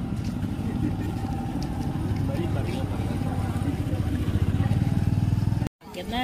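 A steady low motor rumble, louder for the last couple of seconds, that cuts off suddenly near the end, with faint voices in the background.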